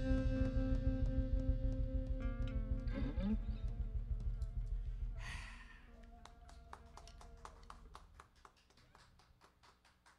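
Live band with electric bass, electric guitar and drum kit holding a final chord that rings out. A sliding note comes about three seconds in and a short cymbal-like wash about halfway. Then the sound drops and dies away, with faint clicks in the tail.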